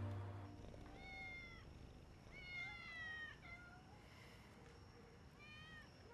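A domestic cat meowing quietly three times, the middle call the longest.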